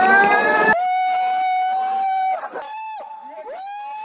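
Water-slide riders screaming: a rising yell over rushing water, then, after a sudden cut, a long high held scream of about a second and a half and further screams that rise at the start and drop away at the end.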